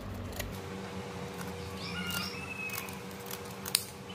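Scissors snipping through the leaflets of an areca palm leaf: a few separate cuts, the sharpest one near the end.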